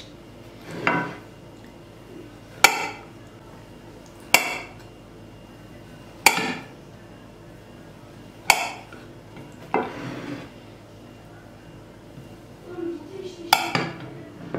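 A kitchen knife cutting through a sponge bundt cake and striking the white ceramic serving plate beneath it: five sharp clinks spaced about two seconds apart, with a couple of softer scrapes between them.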